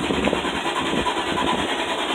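Steady city street traffic noise, with a low engine rumble from passing vehicles.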